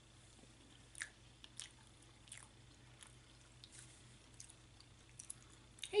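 Faint chewing of small hard-boiled quail eggs, with a few soft, scattered mouth clicks over a low steady hum.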